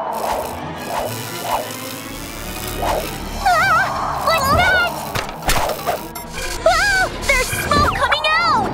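Cartoon background music under the crackling and sizzling of a sparking fallen power line, with the characters' wordless frightened cries about halfway through and near the end.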